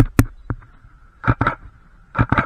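A camera shutter firing, each shot a quick double click. One pair comes right at the start, a lighter click about half a second in, and another pair a little past the middle.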